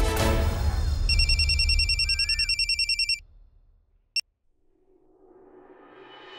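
A phone ringing with a rapid electronic trill for about two seconds, over background music that fades out as the ringing stops. A single short click follows about a second later.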